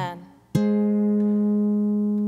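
Background music fades out, and about half a second in a sustained organ chord starts abruptly and is held steady at one pitch.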